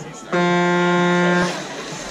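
Race start horn sounding once, a single steady, flat-pitched tone of just over a second that starts and stops sharply: the start signal that follows the "sit ready, attention" command.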